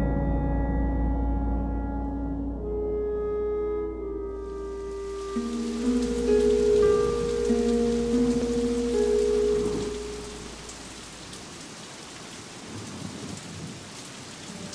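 Held orchestral chords from the film score fading out over the first ten seconds, over a low rumble. Steady rain comes in about four seconds in and carries on alone, more quietly, once the music has gone.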